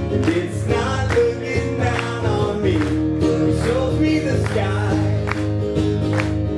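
Acoustic guitar strummed in a steady rhythm, with a voice carrying a melody over it.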